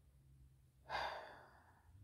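A single audible breath, drawn sharply about a second in and fading out over most of a second.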